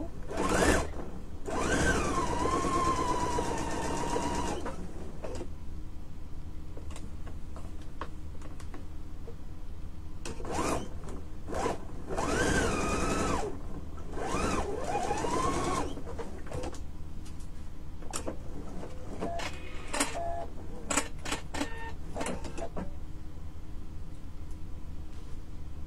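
Electric sewing machine stitching a seam in short runs, its motor whine gliding in pitch as it speeds up and slows, with pauses between runs over a steady low hum. A few light clicks follow near the end.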